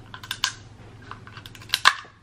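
Close-up eating sounds from snow crab: a scattering of short sharp clicks and smacks at the mouth as the meat is worked out of the shell, with the loudest pair near the end.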